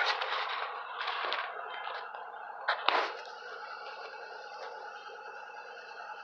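Handling noise and rustling from a phone being moved around under a truck, with one sharp click about three seconds in, then a faint steady hiss.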